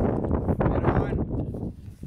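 Strong wind buffeting the camera microphone: a loud, rough, gusting rumble that eases off just before the end.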